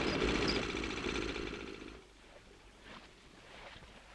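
Small motorboat engine running, then fading out and stopping about two seconds in: the boat has run out of petrol.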